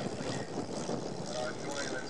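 Propeller engines of a replica Fokker Triplane and Bristol F2 flying close together overhead, a steady drone.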